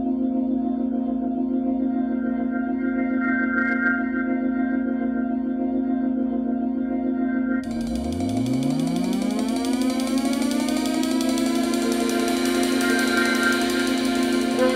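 Background music: a sustained organ-like chord holds steady, then about halfway through a rising synth sweep swells up and opens into fuller music.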